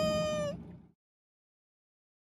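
A man's voice holding one long, steady, high-pitched cry that stops about half a second in, after which the sound track goes silent.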